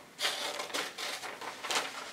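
Scissors snipping through a paper worksheet, with the sheet rustling as it is handled; several short cuts.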